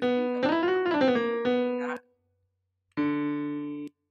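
Soundtrap's Grand Piano software instrument playing note previews as notes are moved in the piano roll. For about two seconds the pitch steps up and back down, and after a short gap a lower note sounds for about a second.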